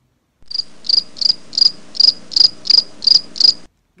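Cricket chirping sound effect: nine evenly spaced high chirps, about three a second, that start suddenly and cut off abruptly. It is the comic 'crickets' cue for a silent pause while an answer is awaited.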